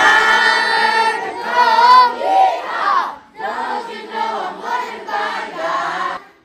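A roomful of children, with a few adults, singing a song together loudly. The voices hold long, sliding notes at first, break off briefly about three seconds in, then carry on in shorter phrases.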